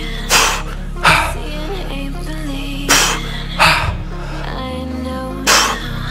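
Background music, over five short, sharp exhalations, mostly in pairs, from a man straining through explosive dumbbell dead rows.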